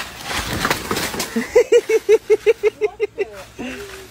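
A dog ripping down a banana plant: rustling and tearing of the fibrous stalk and leaves in the first second or so. This is followed by a quick run of short, high voice sounds, about seven a second, like a person laughing.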